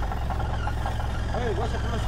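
Car engine idling, a steady low hum heard from inside the cabin, with a faint voice outside briefly about one and a half seconds in.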